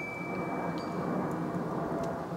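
Steady low background rumble with a faint, thin, high steady tone over it that fades out about a second and a half in.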